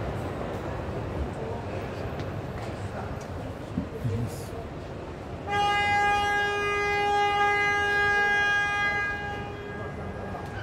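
A loud, steady horn-like tone held at one pitch for about four seconds, starting about halfway through, over the general chatter and noise of a crowded hall.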